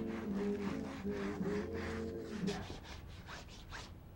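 A hand rubbing powdered chalk pigment onto a painted wall panel in short repeated strokes. Music with held low notes plays under it and stops about two-thirds of the way through.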